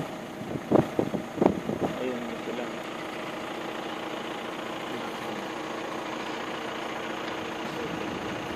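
A vehicle engine idling steadily, with a few brief voice sounds in the first two seconds or so.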